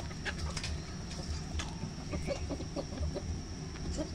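A flock of hens and roosters clucking in short, repeated low notes as they feed.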